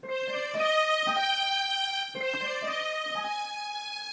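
Digital piano played through a GS synth, layering the piano with a second piano voice two octaves apart and a strings voice; slow chords of held notes change every half second or so, the strings prominent in the mix.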